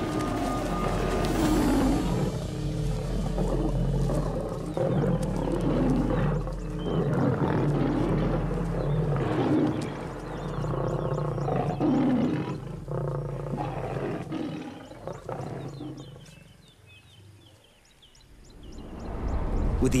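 Several lions growling and snarling as they fight over a kill, over a steady music bed. The growls fade out about three-quarters of the way through.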